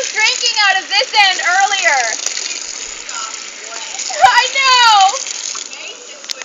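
High-pitched squealing laughter in quick rising-and-falling bursts, then a long falling squeal about four seconds in, over the steady hiss of a garden hose spraying water.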